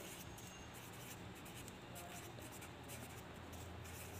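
A felt-tip marker writing on paper, faint, over a low steady hum.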